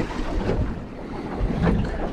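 Wind buffeting the microphone over choppy water lapping against a small boat's hull, with a single knock at the start.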